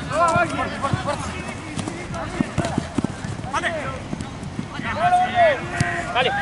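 Players shouting short calls to each other during an eight-a-side football match, several times, over running footsteps and the knock of the ball being kicked on artificial turf.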